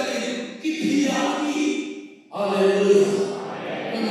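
A man's voice through a handheld microphone and PA, delivered in drawn-out, chant-like phrases with short breaks between them.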